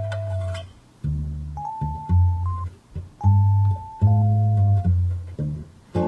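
Ableton Live's Keys Mellow electric piano preset playing along with a recorded guitar part. The guitar was tuned a little sharp, to 445 Hz instead of 440, so the two sound out of tune together.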